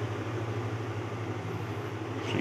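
A steady low machine hum with a faint even pulse, running on without change.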